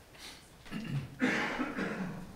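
A person's voice starting to speak, saying "Good", in a meeting room, after about a second of quiet room noise.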